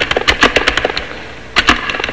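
Keys clacking as words are typed at the NLS console keyboard: a quick, irregular run of key clicks through the first second, then a short pause and two more clicks near the end.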